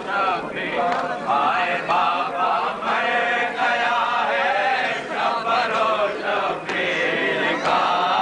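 Men's voices chanting an Urdu noha, a Shia lament, as one continuous melodic chant: a lead reciter with a group of companions singing with him.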